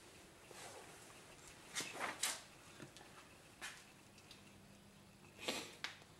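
Quiet room with a faint steady hum and a few soft, brief rustles or knocks: a cluster about two seconds in and a louder pair near the end. These are handling sounds; the drill sharpener's motor is not running.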